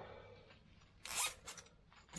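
Two brief rustles of clothing fabric close to the microphone, one about a second in and a shorter one just after, in an otherwise quiet room.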